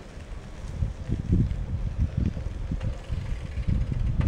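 Wind buffeting the microphone: irregular low rumbling gusts that start about a second in and keep coming.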